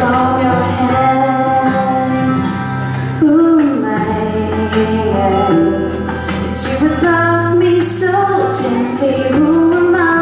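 A woman singing a slow worship song into a microphone, holding long gliding notes over instrumental accompaniment with steady bass notes.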